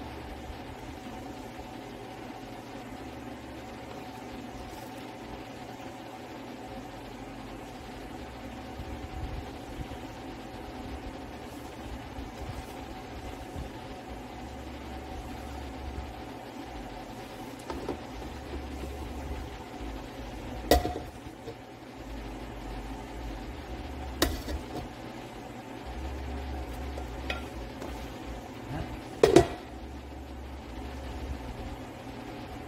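Gloved hands working plastic parts on a workbench while smearing two-part epoxy onto a plastic part: faint rubbing and scraping over a steady background hum. There are a few sharp clicks and knocks of the plastic pieces, about two-thirds of the way through and again near the end, where the loudest one falls.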